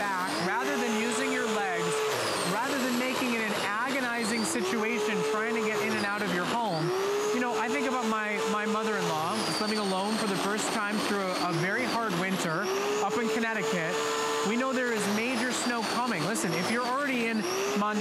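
Earthwise 12-amp corded electric snow shovel running, its motor-driven impeller whining as it chews through and throws snow. The pitch swells up, holds, and drops back in long cycles, about three times, as the machine is pushed into the snow and eased off.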